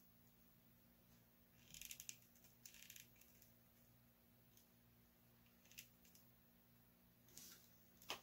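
Faint plastic clicks and rattles from a jointed plastic action figure and its chain accessory being handled, in short clusters around two and three seconds in and a few single clicks later on, over near silence.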